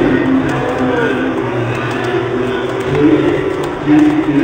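A person's voice, drawn out over wavering pitches.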